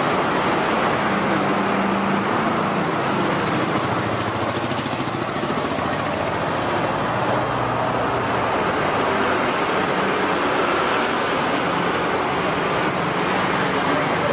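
Steady road traffic noise from vehicles passing on the road, with a low engine hum through the first half.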